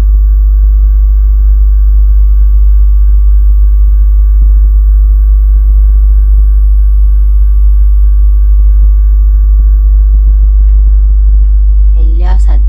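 Loud, steady low electrical hum with fainter steady higher tones layered above it, unchanging throughout.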